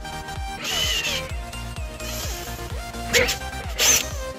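Cordless drill with a 15/32-inch bit drilling through a plastic body panel, over background electronic music: a longer run with a falling whine about half a second in, then two short bursts near the end.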